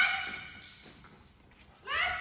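A dog giving high-pitched yipping barks: one rising yip at the start that fades within half a second, and another near the end.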